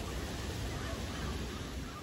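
A large flock of ravens calling faintly over a steady low rumble of outdoor noise.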